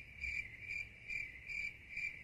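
Faint cricket chirping, an even pulse of high chirps about two a second: the stock cartoon effect for an awkward silence in a suddenly empty room.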